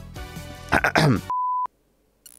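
Talk cut by a short, steady electronic bleep, a single pure tone about a third of a second long like a censor beep added in editing. The sound then cuts off suddenly.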